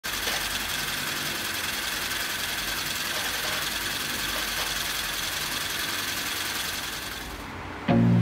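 Homemade solenoid engine running at speed, its coils firing in a fast, steady mechanical clatter as it drives a small electric motor by a belt as a generator. The sound eases off slightly near the end.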